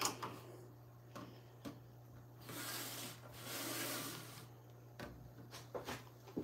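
A clear plastic case of wooden rubber stamps sliding across a tabletop: two faint scraping rubs in the middle, with a few light clicks of the case being handled.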